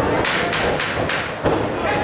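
Boxing gloves landing punches: a quick flurry of four smacks about a third of a second apart, then a heavier thud about a second and a half in.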